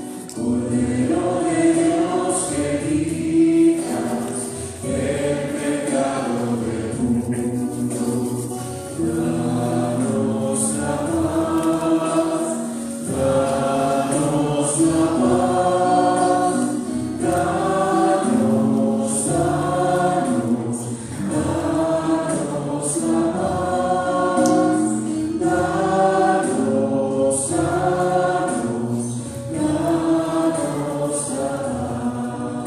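Church choir singing a hymn, phrase after phrase, each phrase a couple of seconds long.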